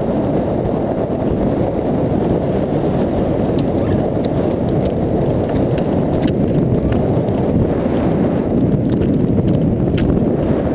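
Wind blowing across the microphone of a camera on a moving blokart, a steady low rumble mixed with the kart rolling over hard sand, with a few faint clicks and rattles from the frame.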